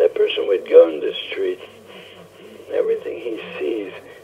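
Speech only: a man talking in a lecture, in bursts with a short pause in the middle.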